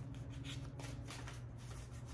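A deck of tarot cards being shuffled by hand, overhand from one hand to the other: a quick run of soft papery swishes, about three or four a second.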